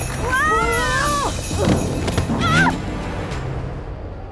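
Background music with high, gliding whinny-like calls over it: one long call that rises and falls in the first second, then a lower sliding cry and a short wavering call about halfway through.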